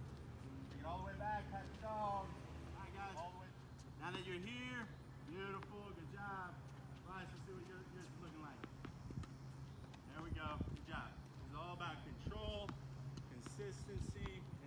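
Tennis balls struck with rackets and bouncing on a hard court: a series of short knocks in the second half, over talking voices.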